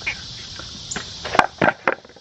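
Makita chainsaw cutting through a rotten wooden board, its sound fading over the first second, followed by a few sharp knocks and cracks in the second half.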